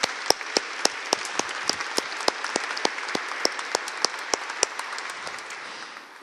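Audience applauding steadily, the clapping fading a little toward the end.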